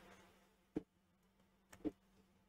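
Near silence broken by two brief clicks, one a little under a second in and a doubled one near the end: computer mouse or key clicks while closing a PowerPoint slideshow.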